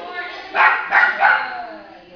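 A puppy barking: three quick barks starting about half a second in, with people talking in the background.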